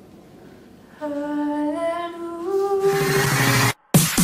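A voice humming a slow series of held notes that step upward in pitch, mock-vocal style. About three seconds in, a loud rushing sound with low tones cuts in over it and stops abruptly just before the end.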